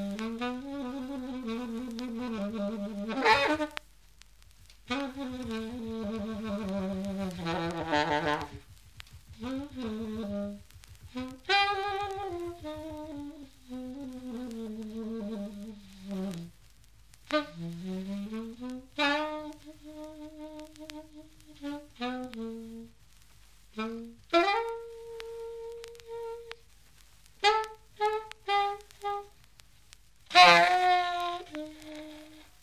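Unaccompanied Grafton plastic alto saxophone playing improvised jazz phrases, long held and sliding notes alternating with short clipped ones and broken by brief pauses.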